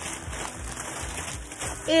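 Crinkling plastic packaging being handled, over soft background music.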